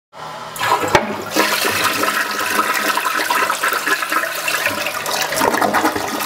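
Toilet flushing: a click about a second in, then a loud rush of water swirling down the bowl.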